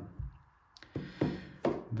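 Several light taps and knocks from handling, as a cardboard box is set down and a revolver is picked up.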